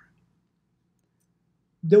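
Near silence in a pause between two spoken phrases; the voice resumes near the end.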